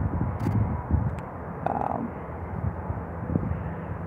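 Low, steady outdoor background rumble with a few faint knocks.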